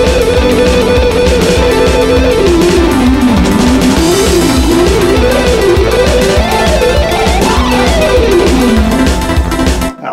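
Electric guitar alternate-picked at high speed, about 200 BPM, in a single-string picking exercise, with a buzzy tone like an angry wasp in a jar. The pitch holds for about two seconds, then runs down and up in waves and climbs near the end.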